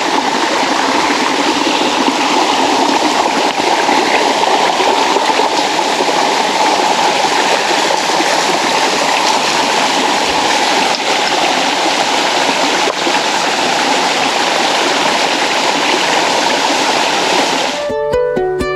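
Small waterfall spilling down a mossy rock face: a steady, unbroken splashing of falling water.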